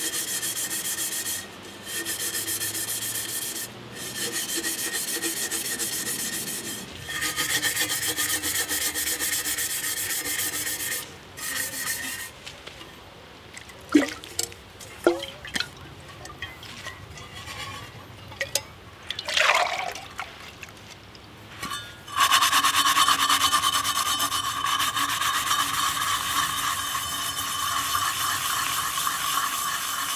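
Pan scrubber scouring fire soot off the outside of a metal water bottle, in runs of rubbing strokes broken by short pauses. Midway it goes quieter with a few knocks. About 22 s in, steady scrubbing starts again, louder, with a high ringing tone running through it.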